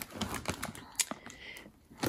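A clear plastic zip-top bag of sticker packs rustling and crinkling as it is handled in a fabric storage basket, with scattered small clicks and one sharper tick about a second in.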